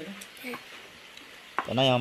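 A plastic spoon stirring and scooping through a bowl of cooked rice, a faint soft scraping. A voice is heard briefly at the start, and loud speech begins near the end.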